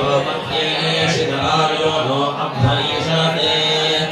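Vedic priests chanting Sanskrit mantras together in a steady, continuous recitation.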